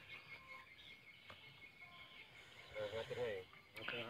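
Faint outdoor field ambience: a steady high hiss, with a faint voice briefly about three seconds in.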